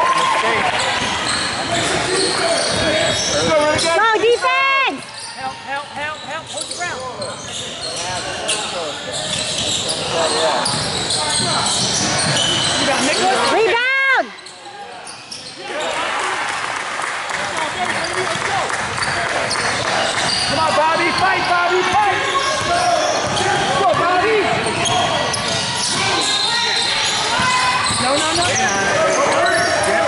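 Basketball game on a hardwood court in a large gym: a ball being dribbled, with indistinct shouts from players and spectators echoing in the hall. The sound drops abruptly twice, about five and fourteen seconds in.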